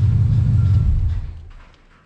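Chevrolet Silverado's engine idling with a tapping that the owner doesn't think is a rod knock and suspects may be a collapsed lifter or a backed-out torque converter bolt. About a second in it is switched off and runs down to quiet.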